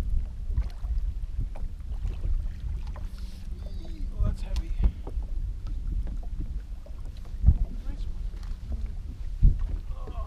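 Steady low rumble and hum heard through a bass boat's hull, with wind on the microphone, broken by several sharp knocks on the boat, the two loudest in the last few seconds.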